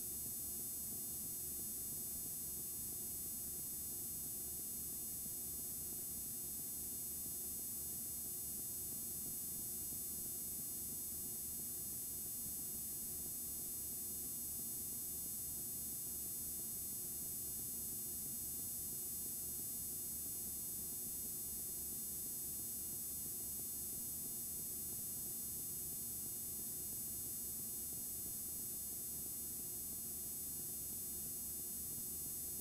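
Steady electrical hum and hiss, unchanging throughout, with many faint steady tones and no other events.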